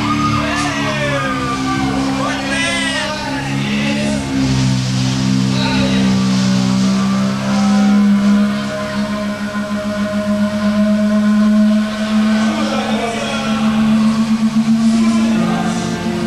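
Live heavy metal band with distorted electric guitars holding long, wavering sustained notes and feedback. There are shouted vocals in the first few seconds.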